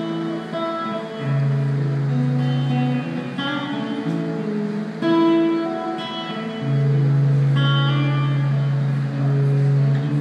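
Solo acoustic guitar playing an instrumental, single picked melody notes over low bass notes that ring on for a couple of seconds at a time.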